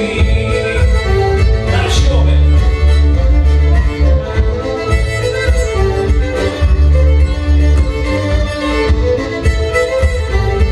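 Fiddle and melodeon (button accordion) playing a folk tune together live, the bowed fiddle carrying the melody over the melodeon's chords and low bass.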